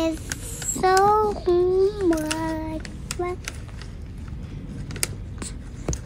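A young child singing a few held notes of a simple song, then a quieter stretch with faint scattered clicks.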